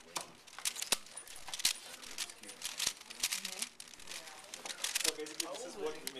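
A 5x5 Rubik's cube's plastic layers being twisted rapidly by hand: a quick, irregular run of sharp clicks and clacks as the slices turn.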